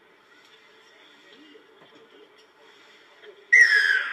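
Referee's whistle blown once near the end, a loud blast that dips slightly in pitch, signalling a successful conversion kick; before it only faint open-field ambience.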